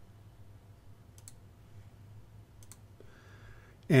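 Two computer mouse clicks about a second and a half apart, over quiet room noise.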